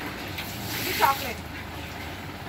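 A brief voice sound about a second in, falling in pitch, over steady low background noise.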